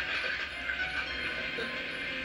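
Soundtrack of a videotape playing back through a TV speaker: a steady, dense mechanical-sounding noise with faint music under it, no speech.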